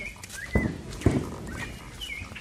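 Two dull thumps about half a second apart, with short bird chirps in the background.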